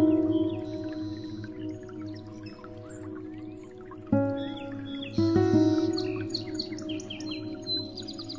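Background music of soft sustained chords that strike afresh about four and five seconds in, with bird chirps over the top.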